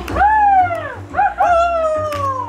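A voice calling out loudly, twice, each call rising and then sliding slowly down in pitch, over Latin dance music with guitar.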